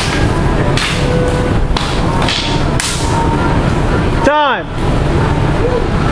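Sharp clacks of escrima sticks striking in sparring, four in the first three seconds, over a steady loud hubbub. About four seconds in, a brief pitched sound rises and falls.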